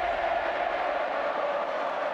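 A steady held tone over an even hiss, unchanging throughout: an outro drone.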